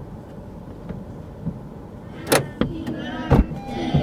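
Low, steady rumble inside a parked car, then a couple of sharp knocks and clicks about halfway through as a rear car door is opened and a child climbs in, with voices starting near the end.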